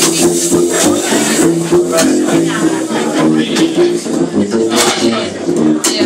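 Small jazz group playing live, with an upright double bass plucked under pitched notes and several sharp cymbal or drum hits, the loudest near the end.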